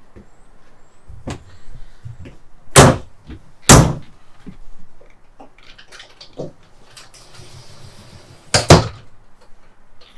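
Cabinet doors being shut, two loud thuds about a second apart, followed by lighter clicks and knocks. Near the end comes another sharp knock as a sliding closet door is pushed open against its stop.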